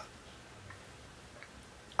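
Quiet room tone with two or three faint ticks.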